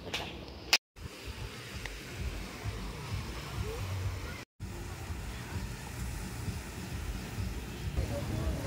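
Outdoor beach ambience of surf with a low, steady rumble. The sound cuts out to silence twice, briefly, about one second and four and a half seconds in.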